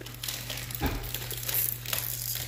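Plastic packaging crinkling as it is handled, with a soft bump a little under a second in.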